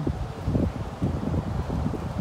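Wind buffeting the microphone: an uneven low rumble in gusts.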